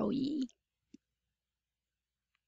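The tail of a woman's spoken word, then a single short click about a second in, and near silence after it.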